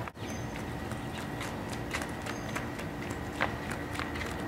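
Light irregular footsteps of sandals on a concrete driveway over quiet outdoor background, with a brief high chirp about every two seconds.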